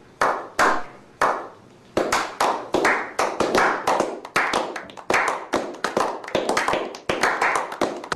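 Slow hand claps: a few single claps at first, then after a short pause a small group claps together steadily.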